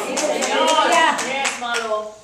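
Steady hand clapping, about four claps a second, with voices calling out over it.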